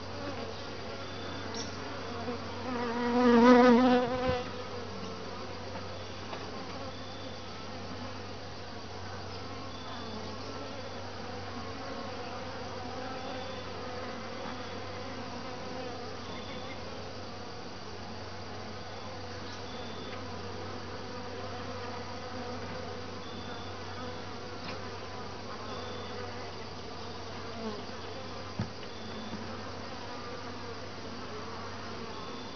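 Honeybees buzzing steadily around an open top-bar hive. About three seconds in, one bee flies close past the microphone and its buzz is briefly loud. A faint knock comes near the end.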